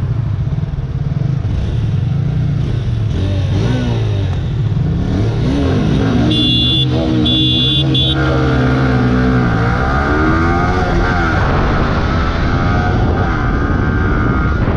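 Yamaha R15 V3's 155 cc single-cylinder engine accelerating hard from a slow start through the gears, its pitch climbing and dropping back at each upshift. Two short high beeps sound about halfway through.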